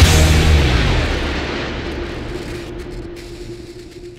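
The last chord of a heavy progressive rock song, distorted electric guitars and drums, struck and left to ring out, fading away steadily over a few seconds while one held note lingers.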